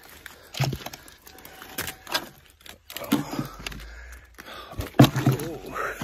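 A man breathing hard and grunting three times while climbing a steep slope on foot, with footsteps and crackling brush underfoot.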